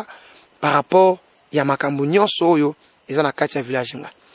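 A man's voice talking in short phrases, over a steady, high-pitched insect trill in the background.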